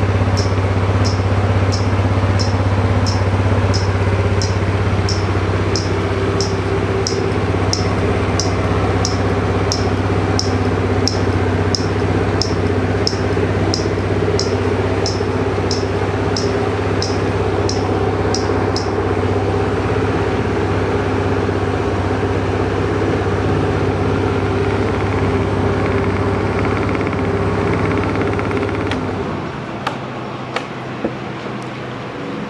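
Suzuki Let's 5 scooter's 49cc fuel-injected single-cylinder four-stroke idling steadily, with a sharp high ticking about one and a half times a second that stops about 19 seconds in. The engine is switched off with the key just before the end.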